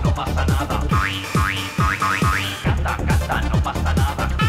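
A 1993 techno megamix playing. A pitch-dropping kick drum hits a little over twice a second over a low bass line, and a short rising synth blip repeats about four times in the middle.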